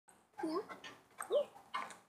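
A woman calling a dog by name twice, each call rising in pitch in a sing-song tone.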